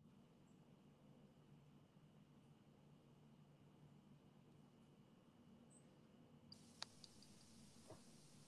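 Near silence: faint room tone, with a few faint clicks near the end.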